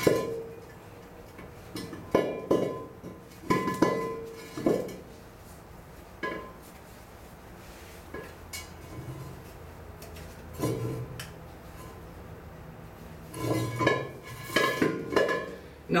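Metal SCBA air cylinders clanking on a concrete floor and against each other as they are handled while webbing is hitched onto their valves. The knocks are separate and ring briefly, with a quicker run of them near the end.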